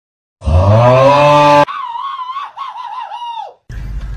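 A boxer dog howling: a very loud low cry held for about a second, then a higher howl that warbles up and down for about two seconds and breaks off suddenly.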